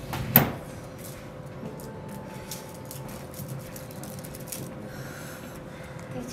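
A single sharp knock about half a second in, followed by quiet room noise with a faint steady hum and a few small ticks.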